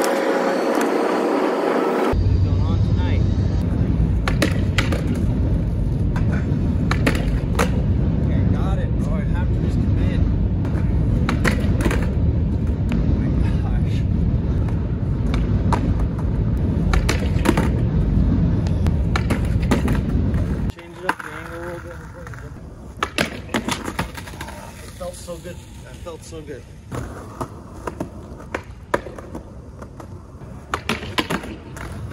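Skateboard wheels rolling over a concrete sidewalk, a steady rumble with sharp clacks from the board and wheels hitting cracks and the ground. A little after two-thirds of the way through, the rumble stops and only scattered clacks remain.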